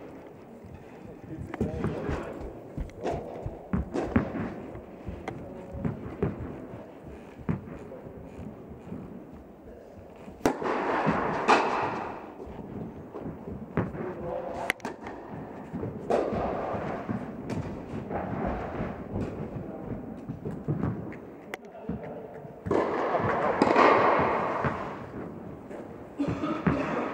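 Tennis balls struck by rackets and bouncing on an indoor court during a rally: a scattered series of sharp pops, with voices in the hall and two louder noisy stretches about ten seconds in and near the end.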